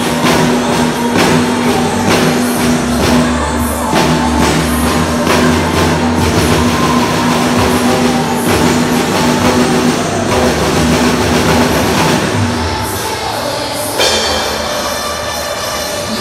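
Acoustic drum kit played live along to recorded backing music, with frequent drum and cymbal strokes. The groove changes about two seconds before the end.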